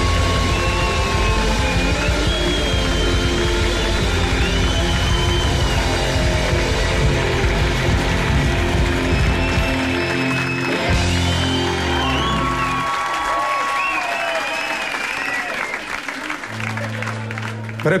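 Live rock band with guitars playing loudly through the closing bars of a song; the bass and drums drop out about thirteen seconds in, leaving a thinner stretch with the audience cheering and applauding.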